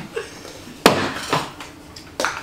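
A single sharp knock a little before halfway, with a couple of fainter knocks and clatters around it.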